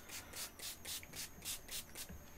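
Small spray bottle spritzing water onto the pans of a watercolor palette to wet the paints: faint, quick squirts at about four a second.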